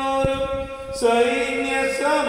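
A man chanting mantras in long, sustained notes, the pitch stepping down about a second in. A brief low thump sounds near the start.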